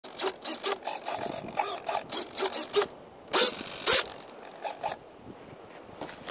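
A quick run of short scraping, rubbing sounds, then two louder rasping scrapes about half a second apart about halfway through, after which it goes quiet.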